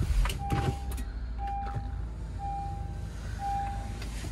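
2017 Honda Pilot's 3.5-litre V6 just started, swelling briefly at the start and then idling steadily, heard from inside the cabin. Over it a dashboard warning chime beeps four times, about once a second.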